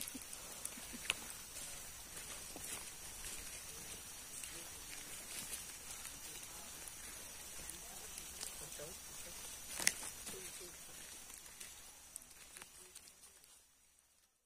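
Quiet tropical rainforest ambience: a steady high insect hiss with faint rustles on the trail, broken by a sharp click about ten seconds in, then fading out near the end.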